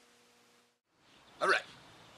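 Faint room tone with a low steady electrical hum, then a moment of dead silence, followed by a man briefly saying "All right."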